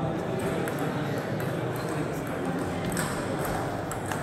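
Busy table tennis hall: a steady murmur of voices with scattered faint clicks of celluloid-type table tennis balls striking bats and tables.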